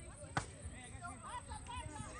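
Distant shouts and calls from players on a field, with one sharp thump about half a second in, a soccer ball being kicked.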